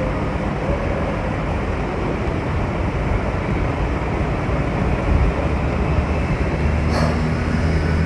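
Steady rumbling background noise, with a low hum growing stronger about five seconds in.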